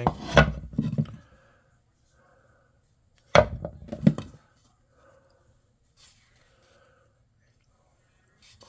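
Dry, roughed-out wooden bowls knocking together as they are handled, with a few knocks near the start and two sharp wooden clacks about three and a half and four seconds in.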